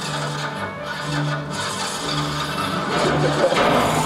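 Rasping, rubbing mechanical noise from a wheeled wooden invention prop as it is worked and moved across the stage, with short low tones repeating underneath.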